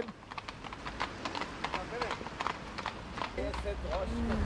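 Hooves of carriage horses clip-clopping at a walk on a wet street: a run of irregular clicks through the whole stretch, with faint voices here and there.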